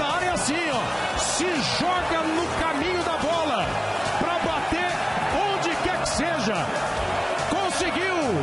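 Football stadium crowd: a continuous din of many voices with fans chanting, their rising-and-falling calls repeating throughout.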